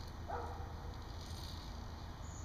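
Quiet outdoor background with no distinct event, only a faint brief sound about a third of a second in; no shot is fired.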